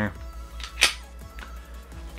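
A single sharp metallic click from a Glock pistol being handled, a little under a second in, over steady background music.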